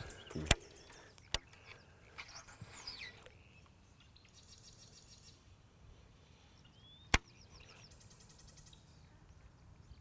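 Quiet open-air ambience with faint bird chirps and three sharp clicks: two in the first second and a half, and a louder one about seven seconds in.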